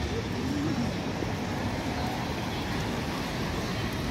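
City street background: steady road-traffic noise with people about.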